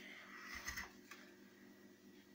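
Near silence: quiet room tone with a faint steady hum and a soft brief rustle a little over half a second in.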